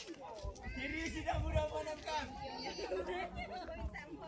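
Indistinct chatter of several people's voices, no words clear, with a low rumbling underneath.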